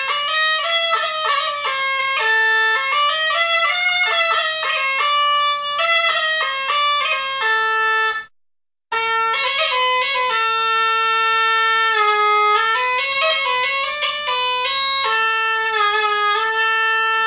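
Belarusian bagpipe (duda) playing a tune in the closed fingering manner, the notes short and separated. The sound breaks off for under a second just past the middle, then the tune carries on with longer held notes.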